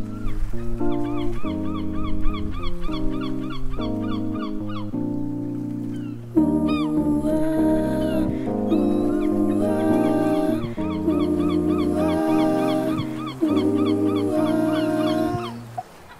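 Instrumental music with no vocals: sustained chords change about once a second under a quick, repeating high figure. It grows fuller and louder about six seconds in and drops away near the end.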